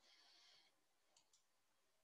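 Near silence: a faint hiss in the first half-second and two faint clicks a little over a second in.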